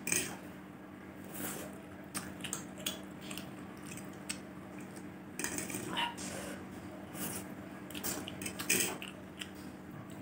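Metal fork scraping and clicking on a plate as it gathers spicy instant noodles, with close-miked chewing in between. The clicks are irregular, with louder clusters about six seconds in and near the end.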